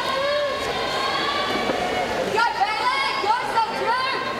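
Voices of people talking and calling out in a swimming pool hall, with louder, higher-pitched calls in the second half.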